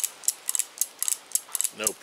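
Cimarron Lightning .38 Special revolver's single action being cycled by hand: a quick run of small metallic clicks, about four a second, as the hammer is cocked and the cylinder turns and locks up. Loaded with unfired cartridges, it turns freely with no binding.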